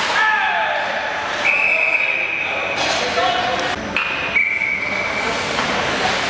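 Ice hockey arena sound: spectators' voices and game noise throughout, with a few knocks. Two long, flat, high-pitched tones cut through it, the second a little lower than the first.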